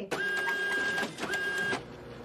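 TV static and glitch sound effect: loud electronic hiss and buzz with a steady high beep that breaks off for a moment about a second in, then resumes.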